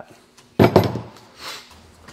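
A hatchet with a steel head and new wooden handle set down on a wooden workbench: a sudden knock about half a second in that rings briefly and fades, then a softer knock about a second later.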